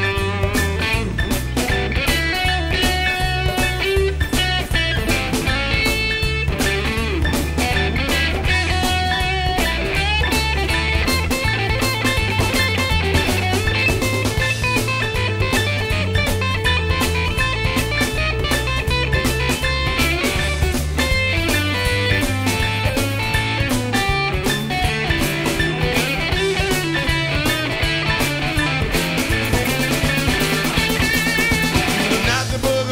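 Instrumental break of a boogie-woogie rock song: a full band with electric guitar to the fore over a stepping bass line and drums keeping a steady beat, no singing.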